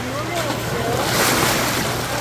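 Water rushing steadily out of a water slide's tube into a shallow splash pool, swelling to a louder splash between about one and two seconds in as a rider shoots out of the tube. Distant children's voices are faint underneath.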